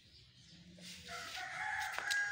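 A bird's single long call, starting about a second in after near quiet and growing louder as it runs on.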